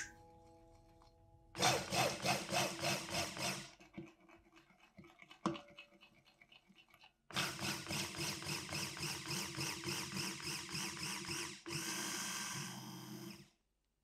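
Immersion blender running in raw soap batter in a glass bowl, blending the oils and lye toward emulsion. It runs in two bursts: a short one of about two seconds, then a longer one of about six seconds that changes tone near the end. A single knock comes between them.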